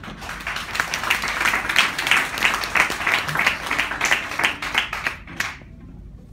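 Audience applause: many hands clapping quickly and densely, dying away near the end.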